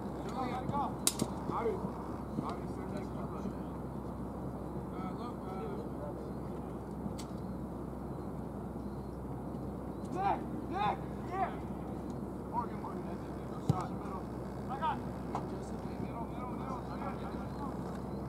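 Soccer players shouting and calling out across the field in short bursts, a cluster of calls about ten seconds in, over a steady low background noise, with a couple of sharp knocks, one about a second in and one near fourteen seconds.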